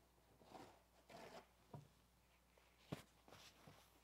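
Faint rubbing and rustling of a paper towel wiping water off a silicone craft mat, in soft strokes, with a sharp tap about three seconds in.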